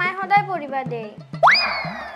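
A comedy 'boing'-style sound effect about one and a half seconds in: a quick upward swoop in pitch, then a tone sliding slowly down over a hiss.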